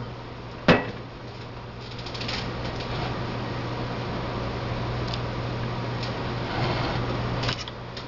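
Hands handling a pickle and a glass jar of pickled eggs: a sharp knock about a second in, then a few seconds of handling noise with light clicks that stops shortly before the end, over a steady low hum.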